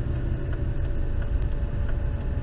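Car driving along, heard from inside the cabin: a steady low rumble of engine and road noise.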